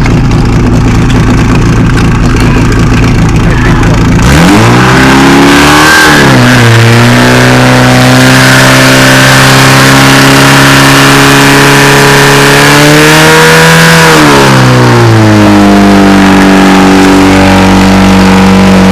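Portable fire pump's engine running at low revs, then revved up hard about four seconds in and held at high revs to drive water through the hoses. It dips briefly just after, then drops to a lower, still fast speed near the end.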